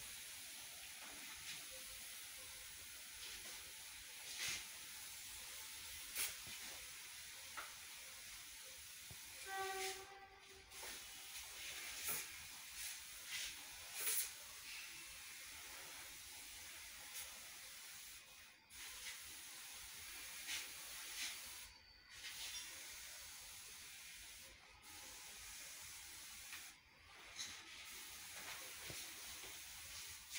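Swissmex backpack pressure sprayer hissing steadily as disinfectant mist comes from its wand nozzle, with the spray cutting off briefly several times in the second half. Occasional sharp clicks and one short pitched tone just before ten seconds in.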